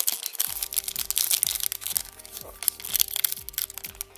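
Foil booster-pack wrapper crinkling and being torn open by hand: a dense run of sharp crackles, over background music.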